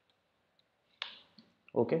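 A single sharp computer click about halfway through, from keyboard or mouse, on an otherwise quiet track. A man says "okay" near the end.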